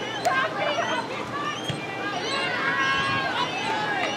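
Several high voices of spectators and players shouting and calling out across a soccer field, overlapping one another, with one drawn-out call about three seconds in. A sharp click sounds just after the start.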